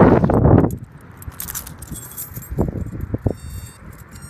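Handling rustle and a jingle of keys on a lanyard, loud at first and stopping under a second in, followed by a few light clicks.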